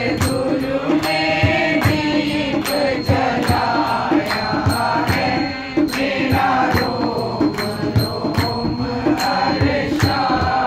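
A group singing a Hindi devotional bhajan, accompanied by hand-clapping and a hand-played dholak drum that keep a steady beat of about two strokes a second.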